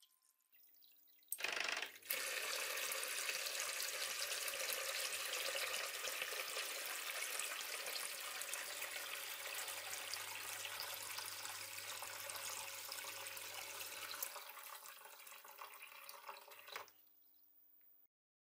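A small submersible water pump starts up about a second and a half in and sends a stream of water through a hose that splashes into a plastic bucket, with a steady low hum under the splashing. The flow weakens over the last few seconds and stops shortly before the end.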